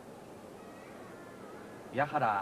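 Steady hiss of an old videotape broadcast with a faint wavering tone in the middle, in a gap in a Japanese announcer's commentary. His voice starts again right at the end.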